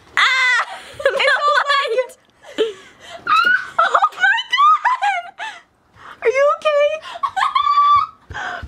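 Young women shrieking and laughing in high-pitched squeals and giggles, set off by one of them walking barefoot in the snow.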